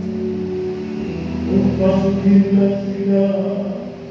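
Slow sung liturgical chant or hymn, voices holding long notes that step from pitch to pitch, with a low sustained tone beneath for about the first second.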